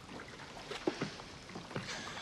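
Quiet sea ambience of a small open wooden boat: water lapping steadily against the hull, with a few faint knocks or creaks about a second in and again near the end.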